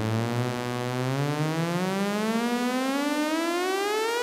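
Bastl Cinnamon filter self-oscillating at full resonance, giving a buzzy tone rich in overtones that glides steadily upward in pitch as its frequency knob is turned.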